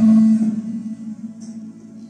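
Electronic keyboard holding a low sustained chord, loudest at the start and then fading away between sung phrases.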